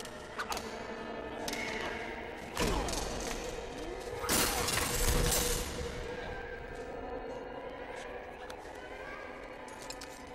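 Film fight sound effects: blows and a heavy body thud, then a loud crash with shattering glass a few seconds in, with a man's grunts and a low steady drone underneath.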